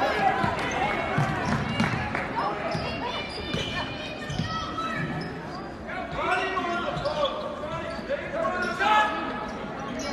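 A basketball is dribbled on a hardwood gym floor during play, with players' and spectators' voices ringing in the big hall.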